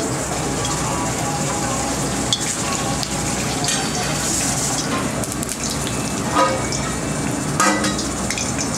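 Hot oil in an iron kadhai sizzling steadily as it heats for deep-frying, with two short knocks in the last two seconds.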